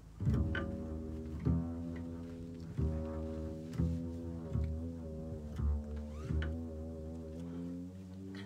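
Upright double bass playing a slow line of low held notes, one after another, each note starting with a sharp attack.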